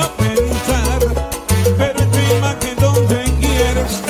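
Salsa music: a recorded salsa band with a stepping bass line, percussion and melodic instruments.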